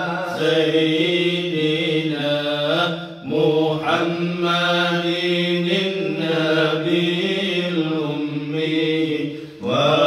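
Men's voices chanting Islamic dhikr, a sustained melodic chant with two brief breaks, about three seconds in and near the end.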